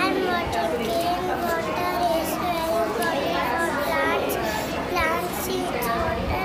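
Young children's voices talking and calling out over one another, a continuous overlapping chatter with no single clear speaker.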